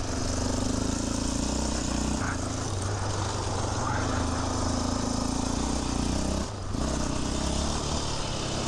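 Yamaha Raptor 700R sport quad's single-cylinder four-stroke engine running under throttle. It lifts off briefly about six and a half seconds in, then pulls again.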